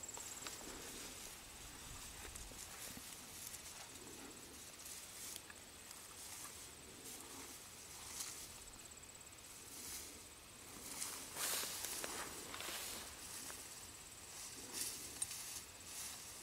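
Outdoor field ambience: a steady high-pitched insect trill runs under the whole stretch. Brief rustling sounds come and go, the loudest a little past the middle.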